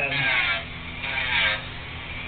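Multi-speed Dremel rotary tool with a nail-grinding guard head running and grinding a dog's toenail in two short passes, its whine dipping in pitch each time it is pressed to the nail.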